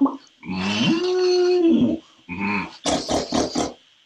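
A man's voice imitating a dog: one long drawn-out call that rises, holds and falls, followed by a few short vocal sounds.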